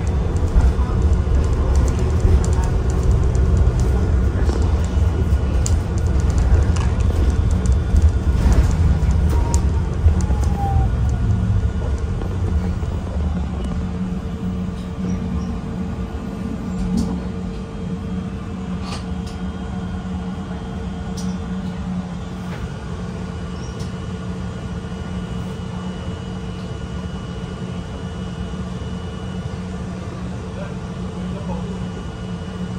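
Interior of a city transit bus: engine and drivetrain rumble loudly as it drives, then ease off about twelve seconds in as the bus slows and comes to a stop, leaving a quieter, steady idling hum.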